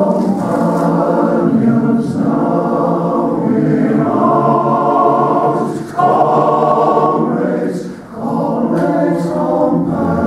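Male voice choir singing in parts, loud and sustained, with brief breaks between phrases about six and eight seconds in.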